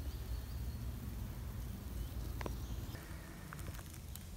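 Quiet outdoor background: a low steady rumble with a few brief faint ticks, one about halfway through and a couple more near the end.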